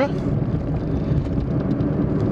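Fiat Cinquecento driving steadily in town, heard from inside the cabin: a low engine rumble mixed with tyre and road noise.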